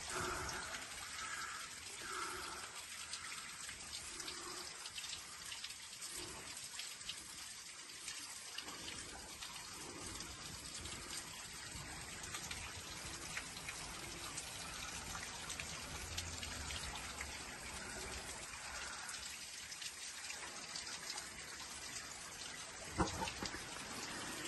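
Water dripping and trickling in a rocky mine tunnel, a steady wet patter, with one sharp knock near the end.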